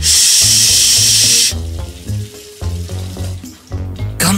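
A loud hiss lasting about a second and a half, followed by background music with a steady bass line.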